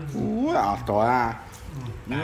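A person's voice making high, sliding, cat-like calls: one rising call, then a longer wavering one about a second in.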